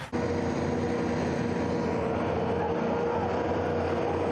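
Wheeled armoured personnel carrier driving over dirt: its engine and tyres make a steady, even drone with a held tone through it. The sound starts abruptly just after the start.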